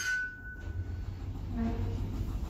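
Lift car travelling upward, a steady low hum from the moving car and its drive, with a faint thin tone dying away in the first half-second.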